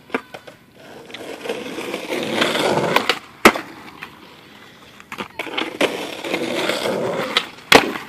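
Skateboard wheels rolling, growing louder as the board approaches, broken by sharp board clacks, the loudest about three and a half seconds in. A second roll follows and ends in two sharp clacks near the end.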